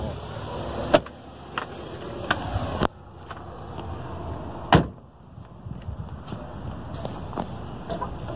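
Knocks and clunks from handling a car's folded-down rear seat and open cargo area: a few scattered sharp knocks, the loudest a little after halfway.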